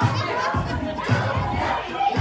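A crowd of people shouting and cheering over music with a steady beat.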